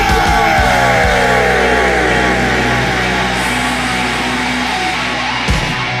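A heavy rock band playing: a yelled vocal slides down in pitch over the first two seconds above a sustained low chord, with a couple of sharp drum hits near the end.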